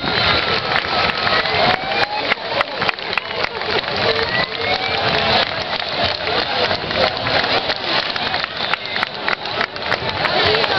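Crowd of spectators applauding steadily: a dense patter of hand claps with scattered voices over it.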